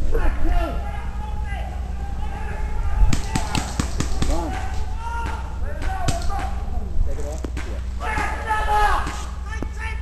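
Paintball markers firing a quick string of sharp pops, about five a second, starting about three seconds in, then a few more shots about six seconds in, over players' voices.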